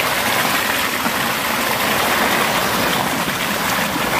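Fast water gushing and splashing steadily over a net and plastic sheet, churning around a hand held in the flow.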